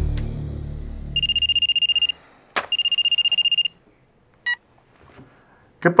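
Mobile phone ringing twice, each ring a fast electronic trill about a second long, as background music fades out; a short electronic beep follows about a second later as the call is answered.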